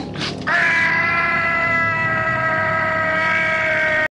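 A man's loud, long cry, held on one pitch, starting about half a second in and lasting about three and a half seconds.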